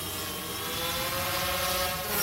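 Quadcopter drone motors and propellers spinning up, as a sound effect: a many-toned whine that slowly rises in pitch, with a hiss over it.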